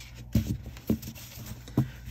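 Mini tarot deck knocked three times against a cloth-covered table, squaring the cards: three short, soft thumps.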